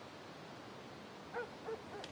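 Quiet background ambience with two brief, faint pitched sounds in quick succession about one and a half seconds in.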